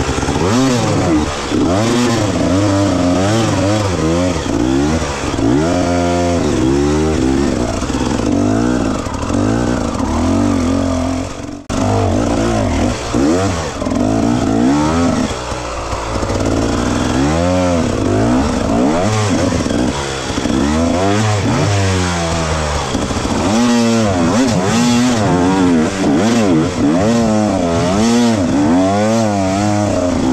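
Enduro dirt bike engine revving up and down over and over as the throttle is worked on a rough trail, with a momentary gap about a third of the way in.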